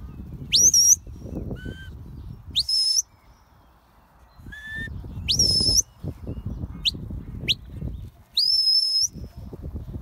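Shepherd's whistle giving working commands to a border collie: a series of shrill blasts, some sweeping sharply up and held, a few quick short flicks, and two lower short notes. A low rumble runs underneath.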